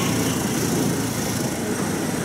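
Steady vehicle and road noise of riding a motor scooter along a street, an even rumble with no sudden events.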